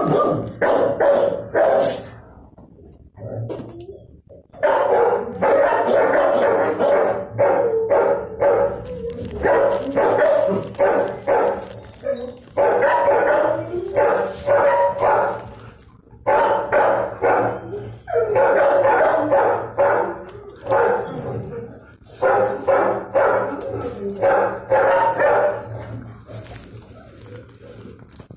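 Dogs barking in a shelter kennel: repeated bouts of rapid barking, each lasting a few seconds, with short pauses between.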